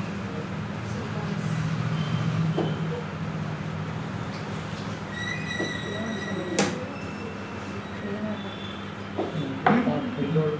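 Chess moves being made: a sharp click about six and a half seconds in as a black piece is set down and the chess clock is pressed, then light knocks and another sharp click near the end as white moves, over a steady low hum.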